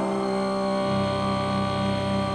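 Opening of a live band's song: a sustained keyboard or synthesizer chord of several steady tones, with a low pulsing part coming in about a second in.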